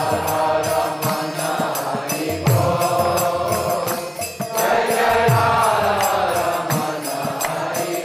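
Vaishnava kirtan: a melody of devotional chanting sung into a microphone over a steady, rhythmic percussion accompaniment with occasional deep thumps.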